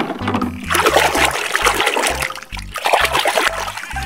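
Soapy water splashing in a plastic tub, in two spells with a short break about two and a half seconds in, over background music with a steady bass line.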